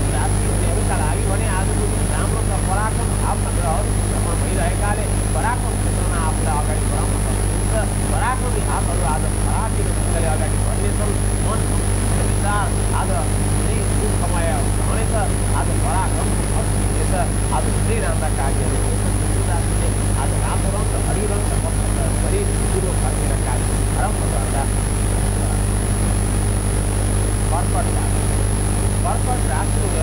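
A man talking steadily over a constant low hum, with a thin steady high whine above it.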